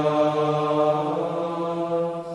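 Men's voices chanting Gregorian plainchant of the Compline office in unison, sustaining one long held note.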